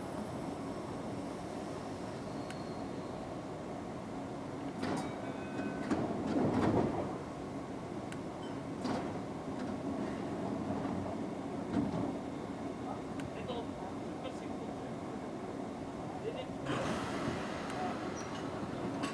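JR 205-500 series electric commuter train standing at the platform with a steady hum, its sliding doors shutting with a thud about six seconds in. Near the end comes a burst of hiss as it prepares to depart.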